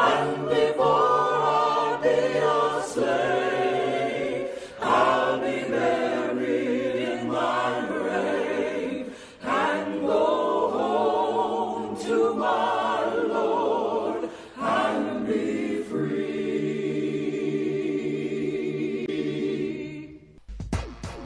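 A choir singing in harmony, the voices wavering with vibrato over a held low note, in phrases broken by short pauses about every five seconds.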